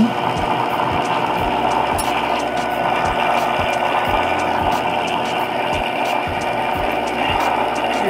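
Sharpening machine's grinding wheel running with a steady hum while the steel jaw tips of a cuticle nipper are held against it and ground, taking off the corners of the jaws.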